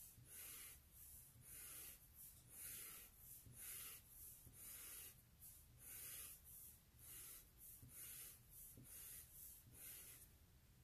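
Sharpie permanent marker scratching on paper in a faint, steady run of quick strokes, about one or two a second, as long lines of windblown hair are drawn.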